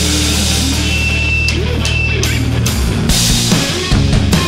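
Live indie rock band opening a song: a distorted electric guitar and bass hold a low chord. Drum and cymbal hits come in, growing busier over the last couple of seconds.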